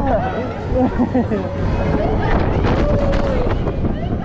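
Wind buffeting the microphone of a camera riding a spinning fairground thrill ride, with indistinct voices from riders rising and falling over it.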